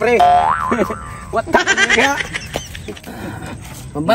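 A comic 'boing' sound effect at the start: a held note that wobbles up and back down in pitch. About one and a half seconds in, it is followed by a short voice-like sound.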